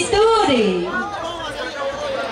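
A voice speaking in the first second, over the chatter of a crowd.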